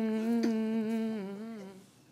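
A young woman hums one long, steady note into a handheld microphone. It holds at one pitch and fades out shortly before the end, flat and unchanging, like a truck horn.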